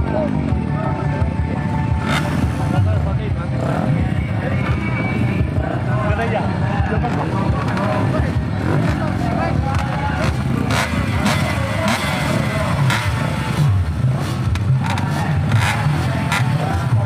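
Several dirt bike engines running at the start line, idling with a few short revs, under people talking and some music.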